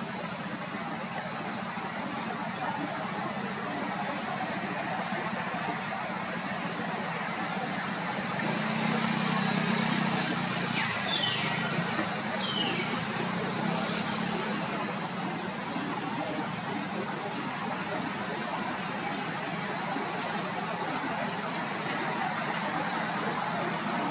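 Steady outdoor background noise. A low hum swells about eight seconds in and fades a few seconds later, and two short, falling high chirps come near the middle.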